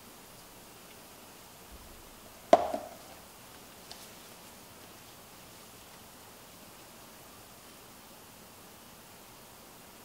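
A single sharp knock of a hard object on the work table about two and a half seconds in, with a short ringing tail and a faint tick a second later, over quiet room tone.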